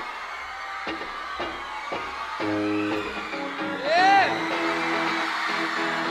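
Live rock band starting a song: a few light clicks, then electric guitar chords coming in about two and a half seconds in and carrying on. A brief voice whoop rises and falls about four seconds in.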